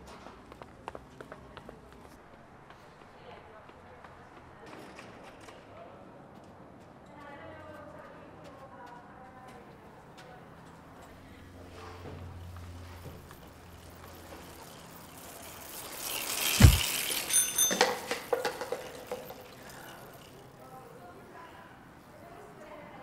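Low ambience with faint voices, then about sixteen seconds in a rising rush of noise and a sharp knock, followed by a brief high ring like a bicycle bell and some clatter: a cyclist rushing past and knocking a coffee cup out of a runner's hand.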